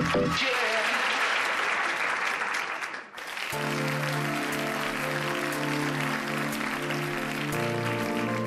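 Studio audience applause, then, after a short dip about three seconds in, soft instrumental music with long held chords begins.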